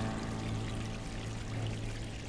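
Bubbling, pouring water under a soft held low note of ambient music.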